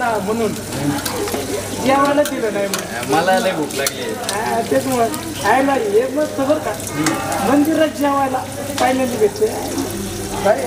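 Two men talking over water running from a tap onto a steel plate being rinsed under it, a steady hiss of splashing water beneath the voices.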